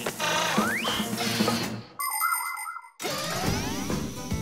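Cartoon soundtrack music with sound effects: a rising whistle-like glide about a second in, a short bright chiming sting around two seconds in, then a sweeping whoosh with a low rumble near the end.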